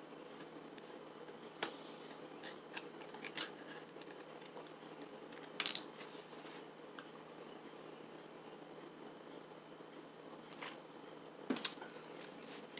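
A person tasting a drink: a few faint, short sip, swallow and handling noises, the most marked about halfway in, over a low steady room hum.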